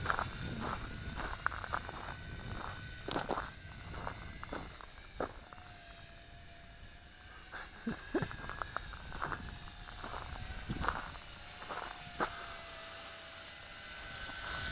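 Faint whine of a distant small quadcopter's motors and propellers, wavering slightly in pitch as it flies, under irregular light clicks and taps.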